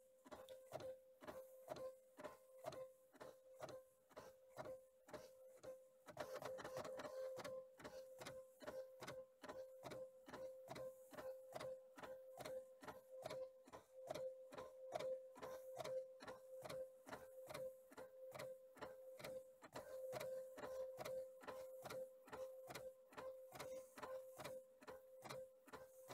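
Canon BJC-70 bubble jet printer printing a test page after its print head cleaning: faint, regular clicking at about three a second over a steady whine as the carriage shuttles and the paper feeds. It is a little louder from about six seconds in.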